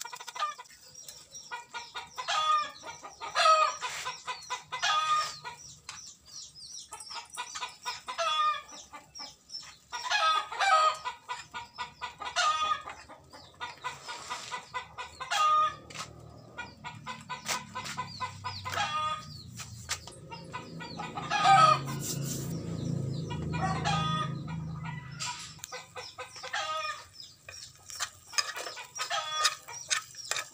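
Chickens clucking, short calls repeating every second or so. A longer, lower and louder sound runs for several seconds past the middle.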